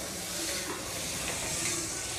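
Butter sizzling as it melts on a hot iron tawa, with a spoon scraping lightly over the griddle as it spreads the butter.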